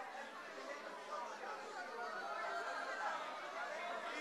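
Congregation praying aloud all at once: many overlapping voices murmuring and calling out together, with no single voice standing out.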